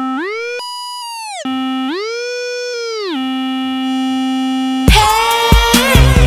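Synthesizer tone in an electronic dance track, sliding up about an octave and back down in slow swoops, then holding a steady low note. About five seconds in, the full electronic beat with drums comes in loudly.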